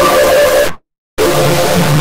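Loud, harshly distorted electronic jingle for a Samsung logo, held tones buried in a noisy wash, cut by a sudden total silence of under half a second just before the middle.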